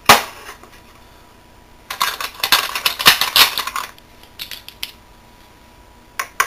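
Base ten blocks being handled and set down on a tabletop: a sharp knock right at the start, a run of rattling clatter from about two seconds in that lasts about two seconds, then a few light clicks.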